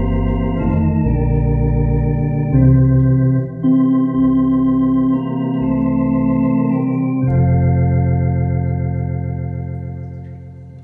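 Tokai T1 Concert electronic organ on a drawbar registration that imitates Hammond tonewheels, playing a slow hymn in sustained chords over a deep bass line. The chords change every few seconds, and the last one, struck about seven seconds in, is held and fades toward the end.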